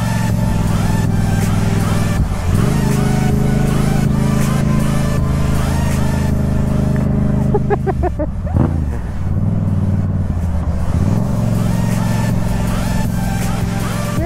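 Yamaha MT-07 parallel-twin motorcycle engine running as the bike rides along. Its pitch climbs a little after two seconds and holds steady, dips and wavers about eight seconds in, then climbs again near eleven seconds.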